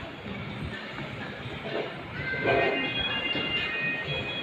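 Shopping-mall hubbub with background music. About halfway in, several steady high notes are held together for over a second.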